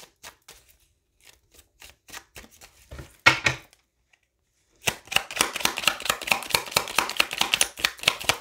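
A deck of tarot cards being handled: scattered light card clicks at first, then, from about five seconds in, a rapid, continuous run of clicks as the deck is shuffled.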